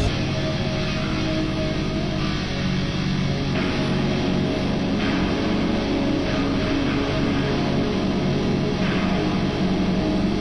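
Heavy metal music from a live concert recording, the band playing steadily.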